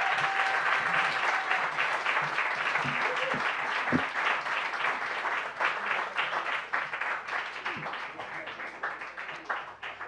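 Audience applauding, a dense steady clapping that thins out near the end.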